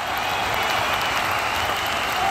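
Crowd applause fading in and then holding steady.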